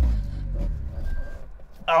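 The Carver One's small kei-car engine stalling while pulling away in reverse: its low running note dies away within the first second or so. The car has grounded on the road edge, which the driver suspects is why it stalled.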